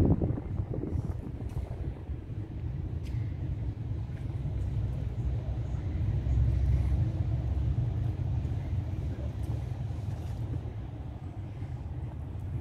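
Outdoor city street ambience recorded while walking: a steady low rumble throughout, with a brief louder noise right at the start.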